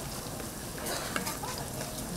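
Fish cake pancakes frying in shallow oil on a flat griddle, a steady sizzle, with a few short scrapes and taps of the metal press and wooden spatula against the pan about a second in.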